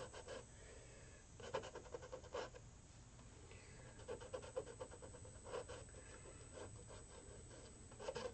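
Fingers rubbing wet acrylic paint into a canvas: faint, soft rubbing strokes at irregular intervals of about a second.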